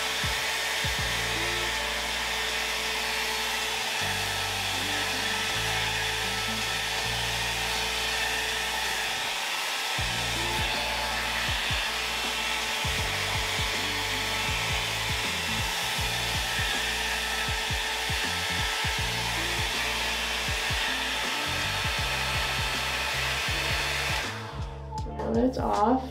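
Revlon hot-air round blow-dry brush running with a steady rush of air while it dries and smooths a section of hair. It cuts off near the end.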